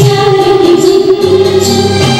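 A girl sings a long held note into a microphone over an amplified backing track with a steady beat.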